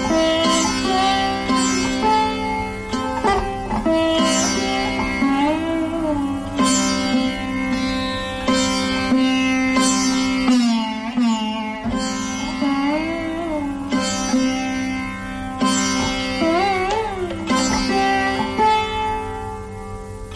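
Sitar playing Raga Bibhas: single plucked notes that bend and slide in pitch, over a steady ringing drone from the sympathetic and drone strings.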